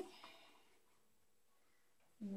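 Near silence: room tone, with a faint fading trace of handling noise in the first half second.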